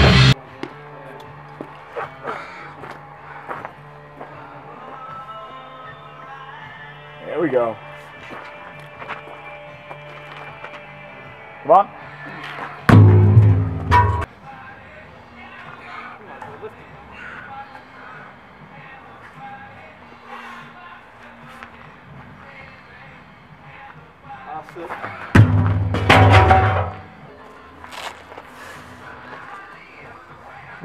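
Rock music cuts off abruptly at the start. Then two heavy thuds about 12 seconds apart stand over a low background.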